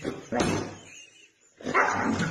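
Two huskies barking and yowling back and forth at each other in two loud bursts, one about a third of a second in and another starting near the end.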